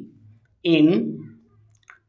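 A single spoken word ("in"), then a short, sharp click near the end from a pen on a paper notebook page as the word is written.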